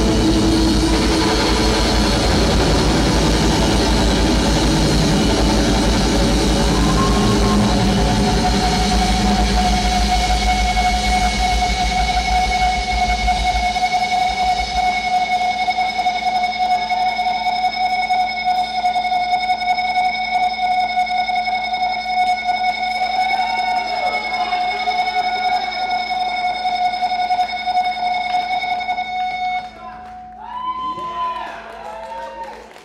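A live grunge band with distorted electric guitars plays loudly at the close of a song. About halfway through, the bass and drum low end drops out, leaving guitar feedback ringing as long steady high tones with a few wavering squeals.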